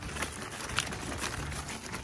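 Toy doll stroller rolled over a gravel path, its small wheels crunching and rattling over the stones, with a few sharp clicks.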